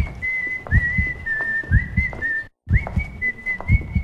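Whistled melody held around one high pitch, each note sliding up into place, over a beat of low drum hits on the trailer's soundtrack. The audio cuts out abruptly for a moment about two and a half seconds in.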